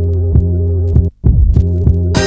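Dance music from a future funk / lofi house mix, muffled with its treble filtered out, leaving a heavy bass, kick drum and a held chord. The beat drops out for a split second about a second in.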